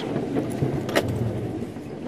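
Safari game drive vehicle running as it drives along a bush track: a steady engine and rumbling drive noise, with a single sharp knock about halfway through.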